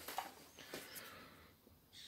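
Faint handling noise: a few light clicks and rustles as a metal chainsaw clutch drum and a screwdriver are moved in the hand, fading out about a second and a half in.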